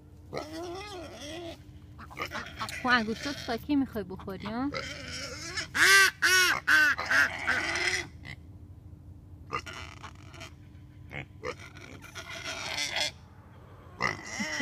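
A toddler's wordless babbling and squeals: a string of short calls rising and falling in pitch, loudest about halfway through.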